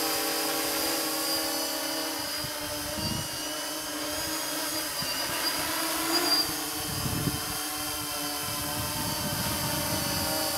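Quadcopter's four electric motors and propellers humming steadily while it hovers under altitude hold, the pitch wavering slightly as the flight controller trims motor speeds. Brief low rumbles of wind on the microphone about three and seven seconds in.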